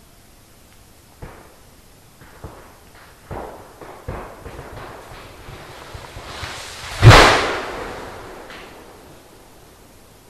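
A tree cracking and falling: several sharp snaps over a few seconds, a swelling rush, then one loud crash about seven seconds in that dies away over a couple of seconds.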